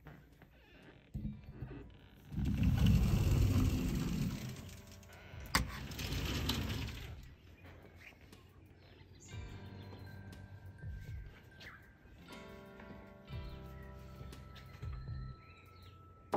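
A sliding glass door is opened: its rollers rumble along the track for about two seconds, then there is a sharp click. After that, background music plays with birds calling.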